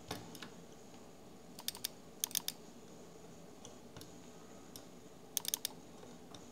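Computer keyboard and mouse clicks, coming in short groups of a few quick clicks several times, with single clicks in between, over a faint steady hiss.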